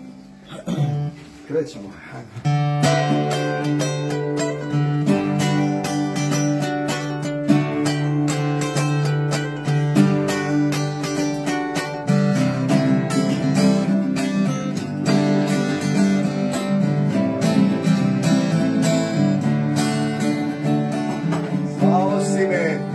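Two acoustic guitars strummed together, playing an instrumental introduction. It opens with a few quiet plucks, then the full strumming comes in about two and a half seconds in, and the chords change about halfway through.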